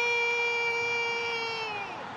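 Football commentator's long, drawn-out goal shout, one vowel held on a steady pitch that slides down and fades near the end, over stadium crowd noise.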